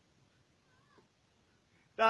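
Near silence, with one faint, short wavering cry about a second in.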